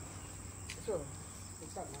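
Steady high-pitched insect trill in the background, with a short snatch of a voice about a second in.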